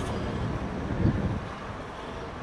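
Street background noise: a low, steady traffic rumble with wind on the microphone, easing slightly near the end.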